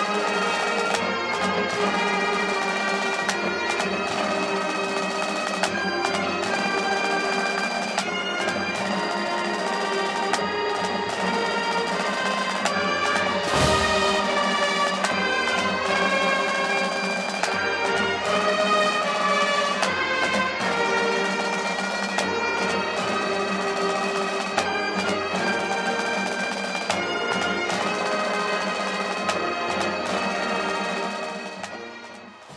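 Bagpipes playing a tune over a steady drone, with a brief thump about halfway through.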